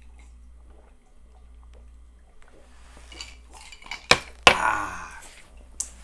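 Drinking glasses with iced cocktails knocked down onto a table: quiet liquid and glass sounds, then two sharp clinks about four seconds in, followed by about a second of rustling noise and one more click near the end.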